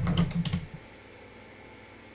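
Computer keyboard keystrokes: a quick run of several clicks in the first second, then only faint room tone.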